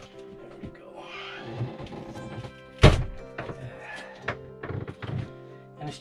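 Thunks and knocks as an old bathroom vanity countertop is worked loose and lifted from its cabinet. One loud thunk comes about three seconds in, with several smaller knocks after it, over background music.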